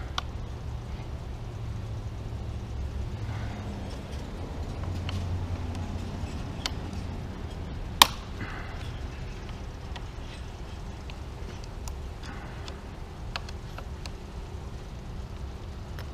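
Hand tool working two bolts loose at a motorcycle handlebar: a few faint metallic clicks and one sharp click about halfway through, over a steady low background hum.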